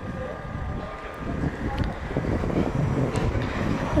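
Wind buffeting the microphone outdoors: a low, uneven rumbling noise with no distinct event.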